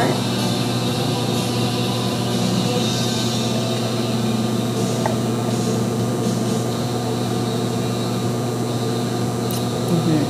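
Steady mechanical hum of the room's air conditioning, even and unchanging throughout.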